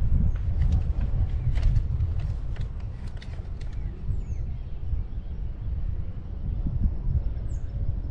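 Wind buffeting the microphone during a ride on an open chairlift, a steady low rumble. Two brief high chirps of a bird come through, about four seconds in and again near the end.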